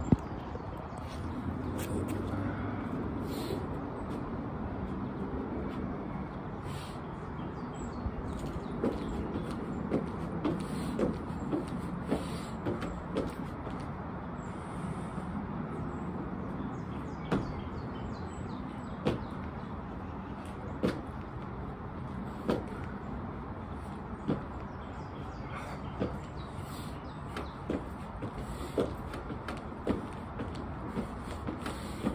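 Sneakers landing on a wooden deck during jumping jacks and jump exercises: a string of short thuds, closer together at first, then about one every second and a half. A steady low rumble runs underneath.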